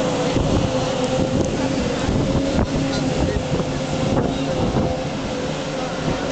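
Outboard engines of thundercat racing boats running hard, a steady engine note that wavers slightly, with wind noise on the microphone.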